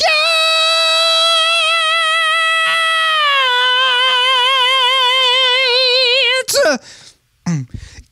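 A man singing one long, high, unaccompanied note into a handheld microphone. It is held steady, then slides down a little about three seconds in, with a vibrato that grows wider until the note is cut off after about six and a half seconds. A few short vocal sounds follow, and a new high note begins right at the end.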